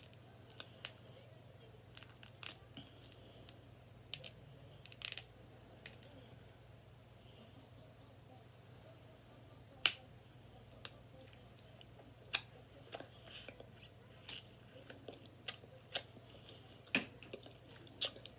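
Cooked seafood shells cracking and snapping as they are broken open by hand, in short irregular cracks with the loudest about ten seconds in, over a faint low hum.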